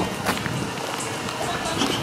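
Footsteps on alley pavement over a steady outdoor urban background noise.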